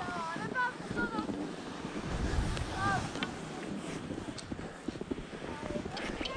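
Wind rushing over a GoPro microphone while skiing, a steady rough noise that swells about two seconds in. Faint, short voice calls sound in the first second and again around three seconds.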